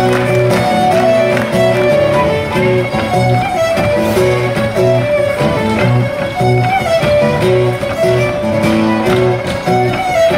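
Fiddle and guitar duo playing a Breton dance tune: the fiddle carries the melody over a steady, rhythmic guitar accompaniment.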